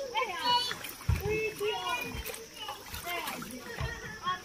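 Several children's high voices calling and chattering over one another, with water splashing as they play in a swimming pool.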